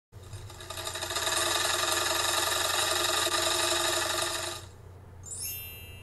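Embroidery machine stitching at a steady fast rate for about four and a half seconds, then stopping. About half a second later a bright chime rings out and carries on over a low hum.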